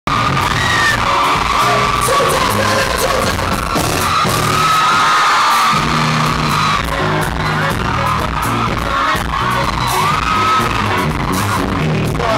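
Live pop band playing loud amplified music, with drum hits and bass, under singing and audience yells and screams.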